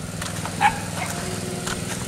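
A water pump running steadily with a low, even hum. A dog barks once, briefly, about half a second in.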